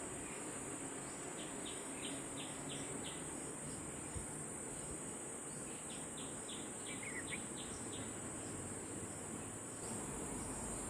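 Steady high-pitched insect chorus of crickets or similar insects. Two short runs of about six quick chirps each come over it, one starting about a second and a half in and another around six seconds in.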